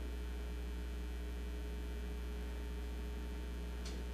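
Steady, low electrical mains hum with a few fainter steady overtones above it, unchanging throughout; a faint brief scratch is heard near the end.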